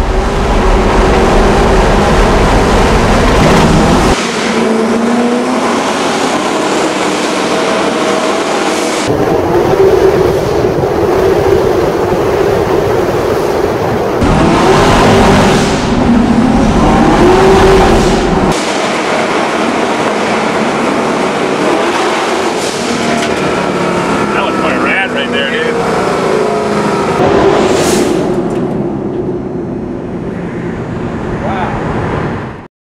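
Twin-turbo 572 cubic-inch big-block V8 of a 1969 Camaro running loud, with repeated hard pulls where the engine note climbs in pitch.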